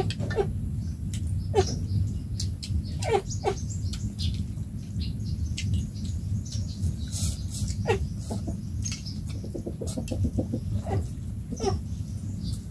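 Short, falling animal calls, about seven of them at irregular intervals, over a steady low rumble, with light clicks and clinks of spoons against metal bowls.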